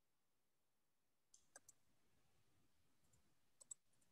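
Near silence with a few faint, sharp clicks: three in quick succession about a second and a half in, and two more, the loudest, near the end.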